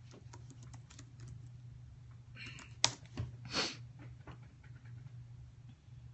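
Light typing on a computer keyboard: scattered soft key clicks, with one sharp click and a short rush of noise near the middle, over a steady low hum.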